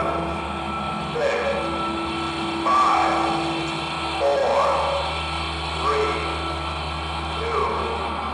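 Marching band playing a slow, soft passage: held notes with pitched swells rising and falling about every second and a half.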